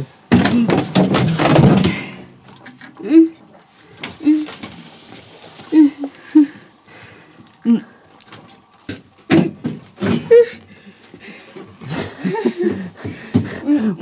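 Clicks and knocks of hands working the engine parts and controls of a Buran snowmobile whose engine is not running, mixed with a person's short wordless vocal sounds.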